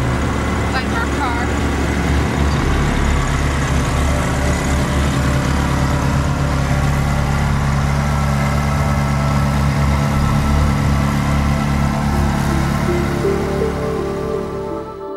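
Ferrari 360 Spider's V8 idling steadily, its pitch unchanging. Music comes in near the end.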